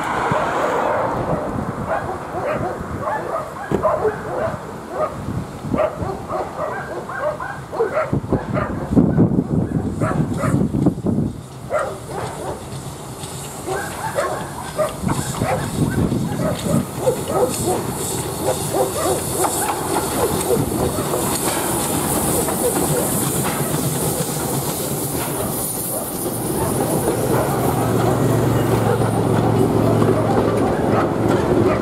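Px29 narrow-gauge steam locomotive working hard, with a rhythmic beat of exhaust chuffs as it approaches and passes close by, and a hiss of steam as it goes past. Near the end the carriages roll by with a steady rumble and wheel clatter.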